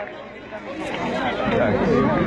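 Several people chattering at once, with no single voice standing out. The talk grows louder toward the end.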